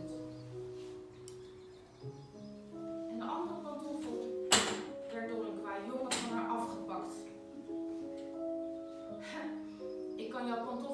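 Electronic keyboard playing slow, held chords and melody notes between passages of a spoken story. A single sharp knock sounds about halfway through.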